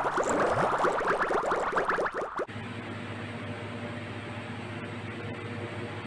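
A loud burst of dense crackling noise lasting about two and a half seconds, then the steady hum of a light-rail train standing at a station platform.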